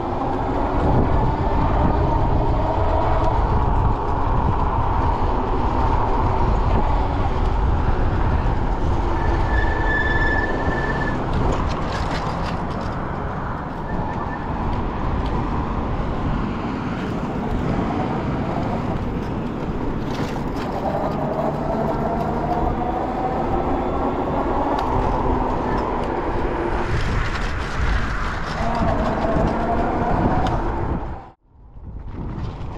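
Wind buffeting the microphone and tyre noise from a Himiway electric bike riding along a paved road. Over the rumble runs the hub motor's whine, which rises and falls in pitch as the speed changes.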